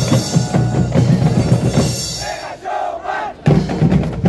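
Marching band drumline playing: bass drums, snare drums and cymbals in a dense, driving rhythm. Just past two seconds the drums drop out briefly under shouting voices, then come back in hard near the end.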